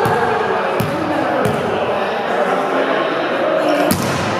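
A volleyball being struck during play in a gym, echoing in the hall: two light smacks about a second in, then a loud smack just before the end. Players' chatter runs underneath.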